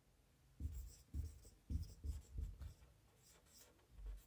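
Marker pen writing on a whiteboard: a faint run of short strokes, most of them in the first three seconds.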